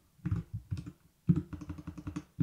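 Computer keyboard typing: a few separate keystrokes, then a quicker run of keys from about a second and a half in.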